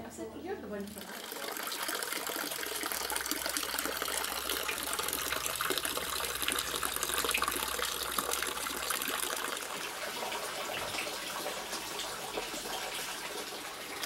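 A thin stream of water running and splashing steadily into a small garden water basin, a continuous hiss that starts about a second in.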